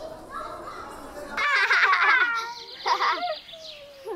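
Low chatter, then children shouting and shrieking at play. The loud, high-pitched shouts start about a second and a half in.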